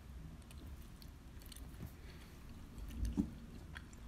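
Faint chewing and biting of a soft, sticky mochi roll (rice dough with green tea and red bean), with small scattered mouth clicks.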